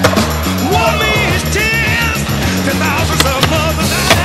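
Skateboard wheels rolling on a concrete floor, with sharp clacks of the board popping and landing at the start, about three seconds in and at the end, under a rock music track.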